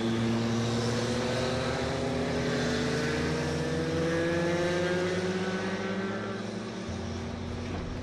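Motorcycles riding along a road, their engine note rising slowly and steadily for several seconds, then fading near the end.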